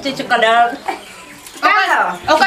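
Women's voices speaking in short, animated phrases of dialogue, with a brief quieter pause about a second in.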